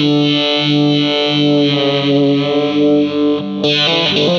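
Electric guitar played through a Boss XT-2 Xtortion distortion pedal: one heavily distorted chord held and ringing out for about three and a half seconds, then a fast choppy riff starting just before the end.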